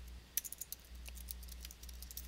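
Typing on a computer keyboard: a quick run of light key clicks about a third of a second in, then a few sparser, fainter keystrokes.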